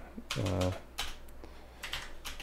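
A few separate key presses on a computer keyboard as a terminal command is typed.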